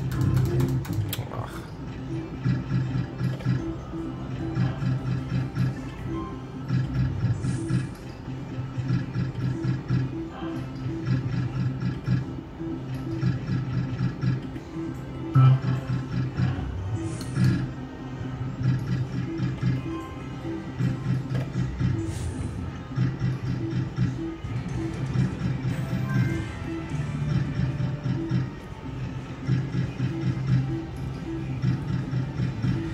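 Electronic jingles and reel-spin sounds from a Novoline Lucky Lady's Charm slot machine, repeating as one spin follows another.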